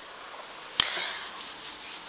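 Whiteboard eraser tapping against the board about a second in, then rubbing across it as writing is wiped off, fading toward the end.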